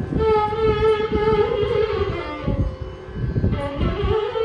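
Carnatic concert music: a lead melody held and bent around one note, with mridangam strokes underneath and violin accompaniment. The melodic line dips and pauses briefly in the second half before resuming.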